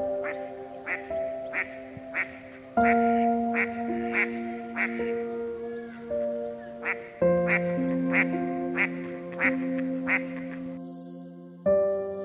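Duck quacking over and over, about one and a half quacks a second, over background music with slow sustained chords. Near the end the quacking and music stop and a soft hiss begins.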